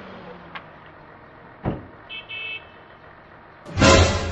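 A car door shutting with a sharp knock as the driver climbs out, then a short high-pitched electronic beep, and a loud burst of sound near the end.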